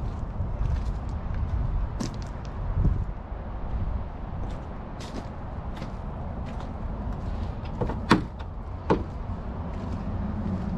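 Steady low rumbling noise with scattered light clicks and a few sharp knocks, the loudest two coming near the end.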